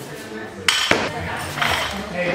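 Loaded barbell clanking as it is snatched overhead, with its plates and collars rattling on the bar. There is a loud clank with a sharp knock just under a second in.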